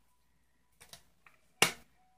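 Eyeshadow palette being picked up and handled: a couple of faint ticks, then one sharp click about one and a half seconds in.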